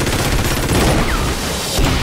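Sustained automatic machine-gun fire, a fast, dense rattle of shots with bullets striking a van. A heavier boom comes near the end.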